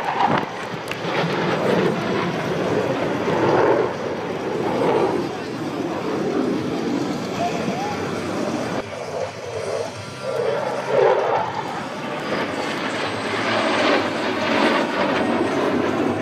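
Jet engine noise from the Thunderbirds' F-16 Fighting Falcons flying their display, a continuous rush that swells and eases, mixed with an indistinct public-address announcer's voice.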